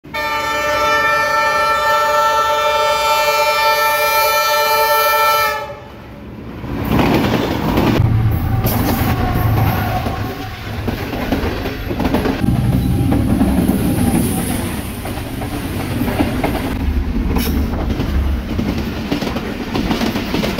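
A train horn sounds one long, steady blast for about five and a half seconds. After a short lull, a passenger train passes close by, a loud rumble with the clatter of wheels on the rails.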